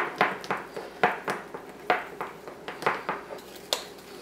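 A metal utensil stirring buttercream icing in a glass bowl, clicking against the glass about three times a second.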